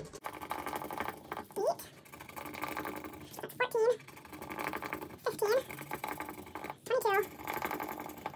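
A woman counting softly under her breath, four short words spaced about one and a half to two seconds apart, over a continuous rustle of paper banknotes being handled.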